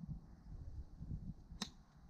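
A golf club striking a ball off the tee: one sharp crack about one and a half seconds in.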